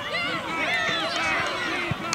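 Several voices shouting and calling out over one another in excited yelling as a tackle is made.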